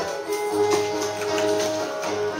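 Casio electronic keyboard playing a melody of held synthesized notes, with a low bass note coming in about half a second in.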